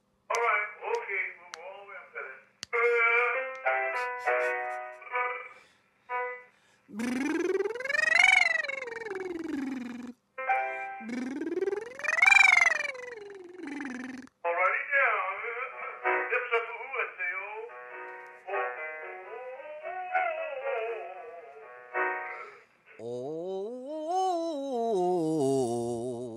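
Vocal warm-up exercise. Runs of quick notes, sounding thin as if over a telephone line, alternate with a man singing sirens that slide up and back down: two high ones in the middle and a lower one near the end.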